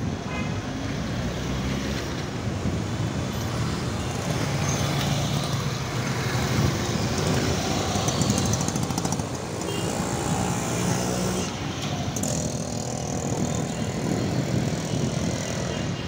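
Busy city street traffic heard from among it: motorcycles, cars and auto-rickshaws running close by in a steady mix of engine and road noise.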